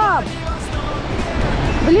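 Rushing whitewater of a river rapid around the raft, under steady background music.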